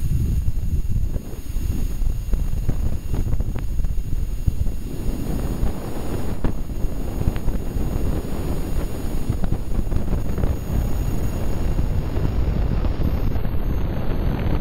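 Sonified magnetometer data from the BepiColombo Mercury Planetary Orbiter's Venus flyby, sped up into the range of hearing. It is a steady rushing noise like a very intense wind, heavy in the low end, with a few faint clicks. The wind-like noise stands for the solar wind buffeting Venus's magnetic field in the turbulent magnetosheath.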